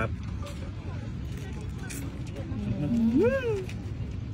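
A man humming with his mouth full while eating: one short 'mmm' held low, then swooping up and back down in pitch, near the end. Under it runs a steady low outdoor rumble.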